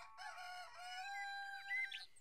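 A cartoon rooster crowing cock-a-doodle-doo, a few wavering syllables ending in one long held note, signalling that morning has come.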